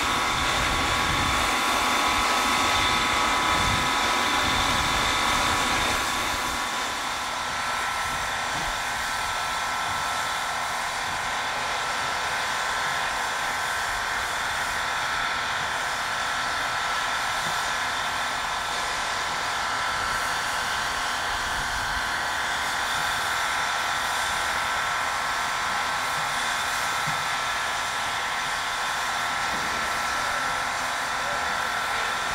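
Steam locomotive (JS-class 2-8-2) standing in steam, giving a steady hiss with a steady high-pitched whine over it. The sound shifts slightly and drops a little about six seconds in.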